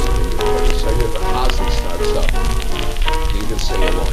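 A 1948 archival audio recording playing back: music under heavy crackle and a steady low hum from the old recording.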